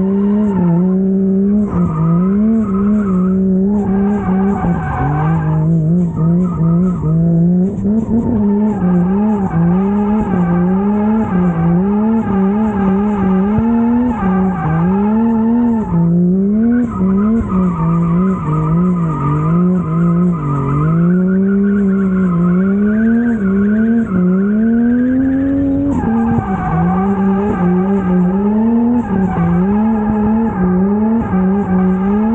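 A car engine revving up and down over and over as the throttle is worked through drifts, its pitch climbing and dropping every second or two, with tyres squealing and skidding on the asphalt.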